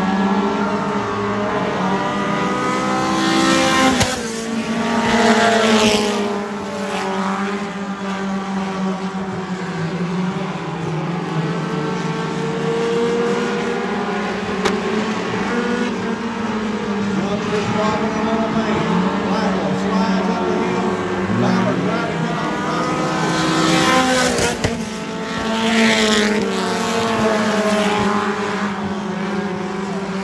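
Several dirt-track race car engines running hard around the oval in a heat race, their pitches rising and falling as they go into and out of the turns. It gets louder about four seconds in and again near twenty-four seconds as the pack passes close.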